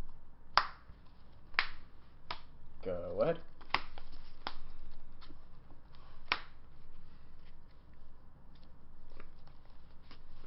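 Trading cards being handled on a table: a series of sharp, irregular clicks and snaps as cards are flicked and laid down, with softer card rustling between them. A brief voice sounds about three seconds in.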